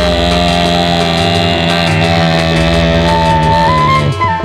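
Dangdut band music over loudspeakers, led by long, held electronic keyboard notes; the melody steps up in pitch near the end.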